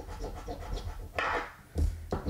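A coin-shaped scratching tool scraping the coating off a paper scratch-off lottery ticket in short strokes, with a louder scrape a little past one second in and a thump near the end.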